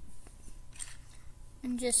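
Small plastic Lego pieces handled and pressed into a Lego net piece, with a brief plastic scrape a little before the middle and a few faint clicks.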